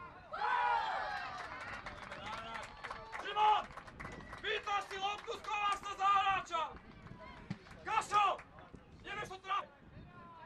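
High-pitched children's voices shouting and cheering in overlapping bursts just after a goal in a youth football match, with a few sharp clicks among them.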